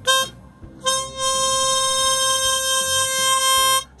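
A diatonic harmonica playing the blow octave split on holes 3 and 6: a brief note, then a single steady octave held for about three seconds, blown with rising breath force. The beating between the two reeds goes away as the breath force rises, the sign that the octave is mistuned and the bottom note (hole 3) needs lowering.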